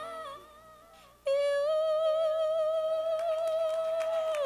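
A woman singing a ballad into a microphone: a phrase ends, there is a pause of about a second, then she holds one long high note with vibrato.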